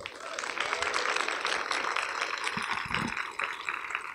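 Audience applauding, many hands clapping together steadily, then dying down near the end.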